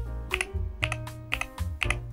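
Keystrokes on a Varmilo Minilo75 HE, a tray-mounted keyboard with an aluminium plate and magnetic Hall-effect linear switches: one key pressed about four times, roughly twice a second, each a short clack, over background music.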